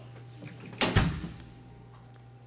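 A door shutting: two quick knocks close together about a second in.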